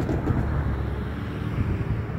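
Low, steady rumble of a long freight train running away into the distance, mixed with wind on the microphone.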